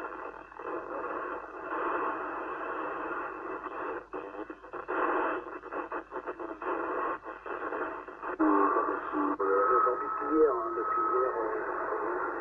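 Yaesu transceiver's receiver audio while it is tuned down through the 27 MHz CB band: narrow, noisy radio sound broken by short dropouts as the frequency steps. About eight and a half seconds in, a faint voice from a distant station comes through the static.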